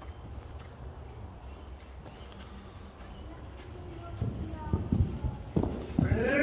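Hoofbeats of a cantering horse on the sand footing of an indoor riding arena: dull thuds, faint at first and loud from about four seconds in as the horse comes close.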